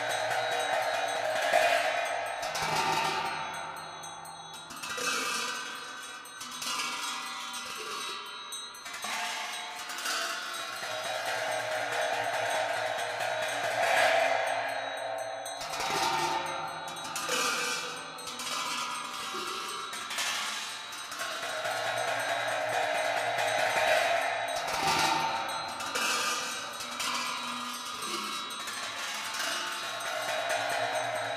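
Tibetan Buddhist ritual music: metal cymbals clashed again and again and left ringing, each crash swelling and fading over a couple of seconds, over a steady held tone.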